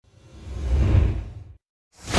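A designed whoosh sound effect with a deep rumble underneath, swelling to a peak about a second in, then fading and cutting out shortly before the end.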